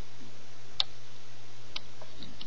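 Two small, sharp clicks about a second apart, the first louder, as rubber bands are worked onto the pegs of a plastic Rainbow Loom with its hook, over a steady low hum.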